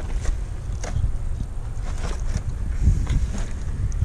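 Wind buffeting the microphone, an uneven low rumble, with a few faint ticks scattered through it.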